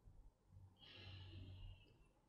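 Near silence: room tone, with a faint breath lasting about a second, starting about a second in.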